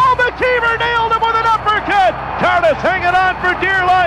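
A man's hockey radio play-by-play commentary calling a fight, spoken continuously with no pauses.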